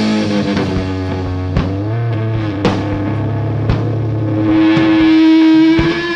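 Psychedelic rock recording: guitar playing long sustained notes over a low drone, one note bending in pitch, with sharp drum hits about once a second. A single note is held through the last second and a half.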